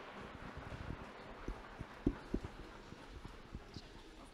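Students knocking on lecture-hall desks, the customary applause at an Austrian university at the end of a lecture: a dense, irregular patter of low knocks, the loudest a little after two seconds in.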